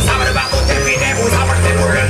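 Live electro swing hip-hop band playing: a steady bass line under a high tone that glides up in pitch and holds at the top near the end, a build-up in the music.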